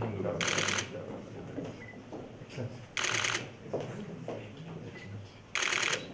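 Camera shutters firing in short rapid bursts, three times about two and a half seconds apart, over a low murmur of voices in the room.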